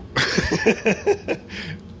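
A man laughing: a run of short, breathy pulses that dies away after about a second and a half.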